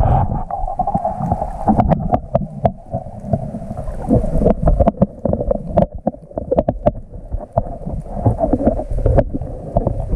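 Muffled underwater sound heard through a waterproof camera housing: a continuous low rumble of moving water, broken by many sharp clicks and crackles.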